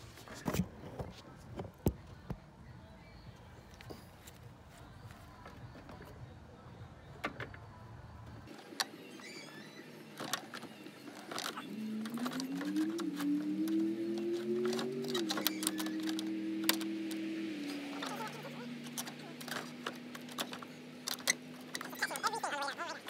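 Clicks and knocks of a new radiator with plastic tanks being handled and slid down into a car's engine bay. About halfway through, music of long held notes that step in pitch comes in under the clatter.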